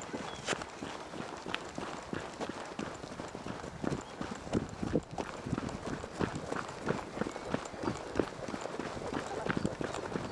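Horse hooves on a dirt track at a trot, a quick, uneven run of dull thuds.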